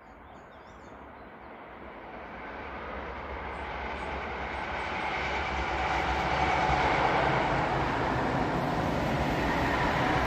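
EU07 electric locomotive hauling a passenger train, approaching and passing: rumble and rail noise that grows steadily louder, peaks about seven seconds in, and stays loud as the coaches roll by.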